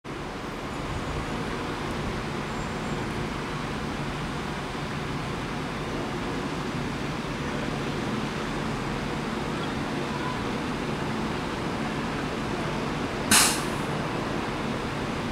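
Class 390 Pendolino electric train standing at the platform with its onboard equipment running: a steady hum and whirr. A short, loud burst of noise comes near the end.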